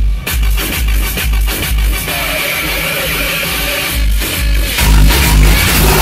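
Electronic dance music played loud through a custom car audio system, its two rear subwoofers driving a heavy pulsing bass beat. The bass thins out for about two seconds in the middle, then comes back strong.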